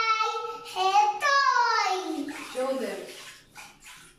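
A toddler's high-pitched voice talking and exclaiming, with a long falling glide in pitch partway through, echoing slightly in a small tiled bathroom.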